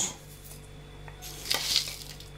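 Metal spoon scooping dry mixed seeds in a plastic jar: a brief rustling scrape about one and a half seconds in.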